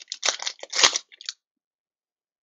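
Plastic baseball-card pack wrapper being torn open and crinkled by hand: a quick run of sharp crackles over about the first second and a bit, then it stops.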